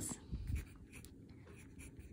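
Pen writing on a paper worksheet: faint scratching of short handwritten strokes, a little busier in the first half-second.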